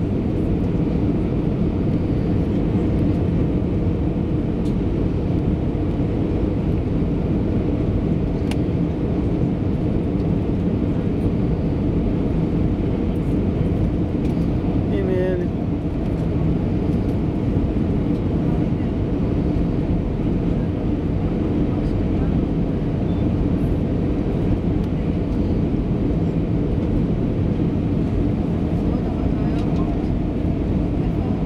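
Airliner cabin noise heard from a window seat over the wing: jet engines and airflow making a steady low drone during the descent.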